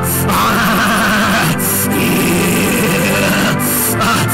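Live gospel band playing: sustained chords over a drum kit, with cymbal crashes about a second and a half in and again near the end.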